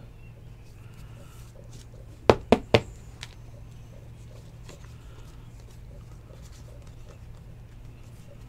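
Trading cards being handled and flipped through by hand, with three sharp taps in quick succession a little over two seconds in, over a steady low hum.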